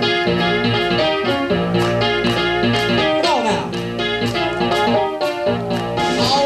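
Live blues-soul band playing the instrumental opening of a song, with electric guitar, drums and bass, and a note sliding down in pitch about three seconds in.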